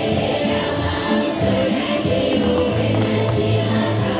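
A folk choir of many voices singing a song with instrumental accompaniment, over a steady jingling tambourine-like beat.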